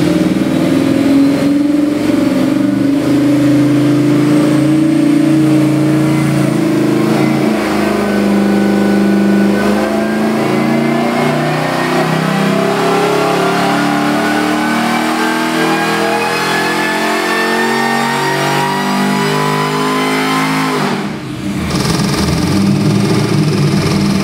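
Whipple-supercharged Chevrolet LS V8 running on an engine dyno, first steady at about 2,200 rpm, then pulling under load with its pitch climbing steadily for over ten seconds. Near the end the pull stops abruptly and the engine drops back.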